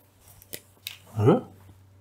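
Sharp clicks of a felt-tip pen being picked up and handled, followed by a short, steeply rising squeak.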